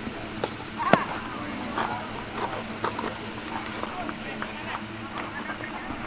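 Indistinct voices of players and spectators calling around a baseball field, with one sharp smack about a second in.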